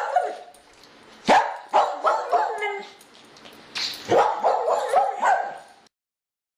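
A dog barking repeatedly in two runs of short barks, with a pause of about a second between them.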